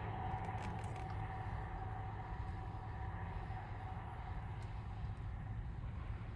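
Steady low rumble of a car in motion: road and engine noise, with a faint whine that fades out over the first few seconds.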